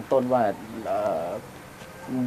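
A dove cooing once, a single call of about half a second, just after a man's voice.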